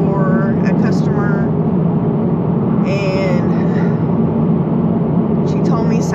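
Steady road and engine noise inside a moving car's cabin, with a few short snatches of a woman's voice.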